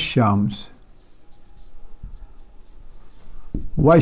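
Marker pen writing on a whiteboard: faint, irregular scratching strokes between a man's words at the start and near the end.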